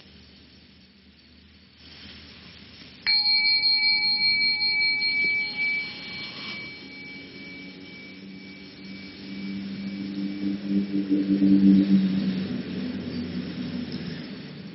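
A small bell struck once about three seconds in, ringing with a few clear high tones that slowly fade. A lower ringing tone then swells and dies away near the end.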